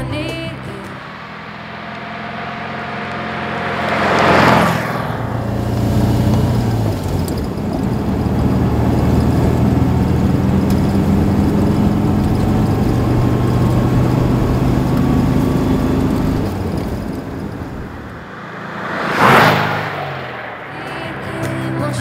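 Porsche 356 Pre A's air-cooled flat-four engine as the car drives past about four seconds in. The engine is then heard running steadily under way from on board. A second quick pass-by comes near the end.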